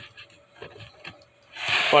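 Faint rubbing and small clicks from a handheld phone being handled, then a sharp breath in and a man starting to speak near the end.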